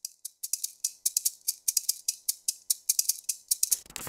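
A pair of gourd maracas filled with seeds, shaken in a quick, even rhythm of about five or six bright shakes a second. A brief rustle comes near the end.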